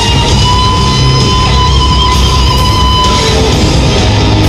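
Black metal band playing live on stage: distorted electric guitars over bass and drums, loud and unbroken. A single high note is held over the band for nearly three seconds before it drops away.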